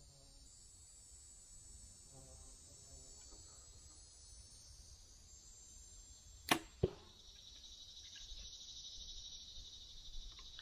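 Compound bow shot: a sharp snap of the string on release about two-thirds of the way in, followed about a third of a second later by a second sharp crack as the arrow strikes the target. Insects whir steadily in the background.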